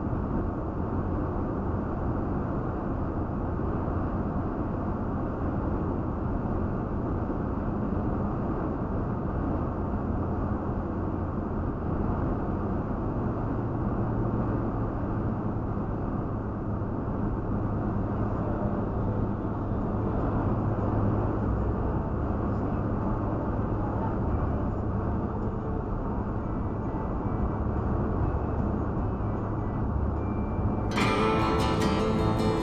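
Steady road noise from a Toyota Tacoma pickup driving at highway speed, heard from a dashcam in the cab: a low, even rumble of tyres and engine.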